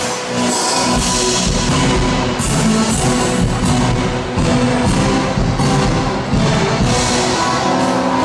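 Live band playing an instrumental passage of a Turkish pop song through a concert PA, with a steady drum and cymbal beat.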